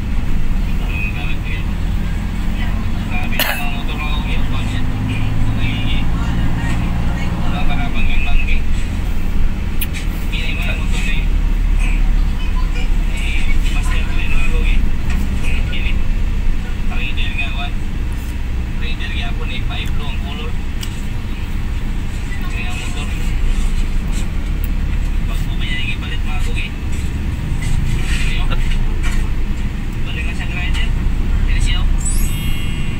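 Engine and road noise heard from inside a moving vehicle in city traffic, a steady low rumble, with indistinct voices and a single sharp click about three and a half seconds in.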